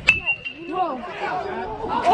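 Metal baseball bat striking a pitched ball just after the start: a sharp ping with a brief ringing tone, then spectators' voices calling out.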